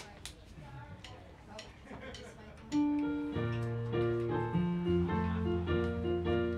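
Faint voices and a few small clicks, then a piano starts a song's introduction nearly three seconds in, playing held chords over a low bass line.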